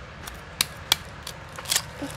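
Knife blade cutting into a sea urchin's hard, spiny shell, giving a few sharp cracks and clicks spread over the two seconds.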